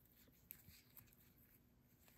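Near silence, with a few faint soft ticks and rustles of a ribbon being handled as it is tied into a knot.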